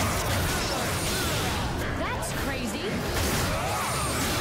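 Dubbed fight-scene sound effects: a sudden, noisy burst of spark-hit effects with whooshes, over action music.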